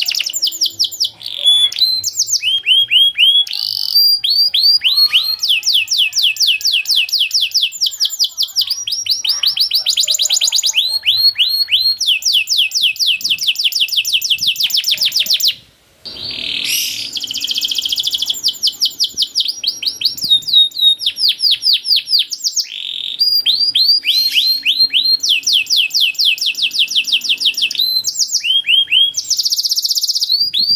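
Domestic canary singing a long song made of rapid trains of repeated downward-sweeping chirps, each train a different note. One brief break comes about halfway through.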